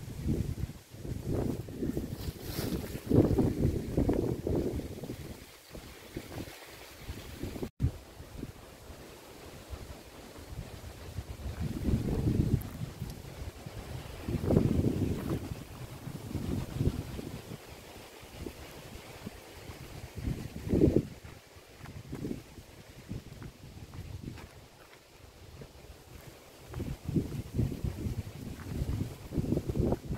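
Wind buffeting the microphone: a low, gusty noise that swells and fades every few seconds.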